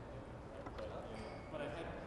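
Faint background chatter of people talking in a room, with a couple of soft knocks.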